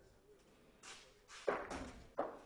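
Faint sharp knocks of a bocce volley shot (bocciata): the thrown ball strikes, loudest about a second and a half in, with a few lighter knocks around it.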